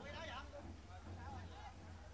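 Faint, distant voices calling out across the pitch, over a steady low hum.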